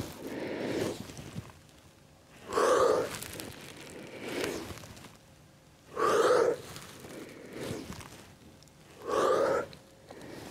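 A woman breathing hard with exertion through an exercise set: three loud exhalations about three seconds apart, with softer breaths between them.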